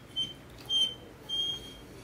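A Belgian Malinois whining: four short, thin, high-pitched whines, the last and longest lasting about half a second. It is eager whining while she is made to wait for a treat.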